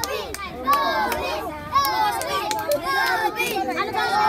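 A group of children talking and calling out over one another, several high-pitched voices at once, with a few short sharp hand claps among them.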